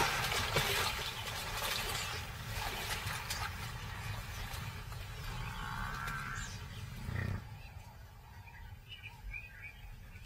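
Lionesses growling as they feed on a buffalo kill. The sound is loudest in the first couple of seconds, then fades, with a short louder burst about seven seconds in.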